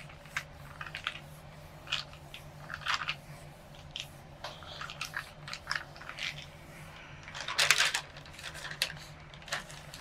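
Hands rubbing and pressing a sheet of paper down onto a gel printing plate to pull a print, making scattered short paper rustles and crinkles. A louder, longer rustle comes about three-quarters of the way through.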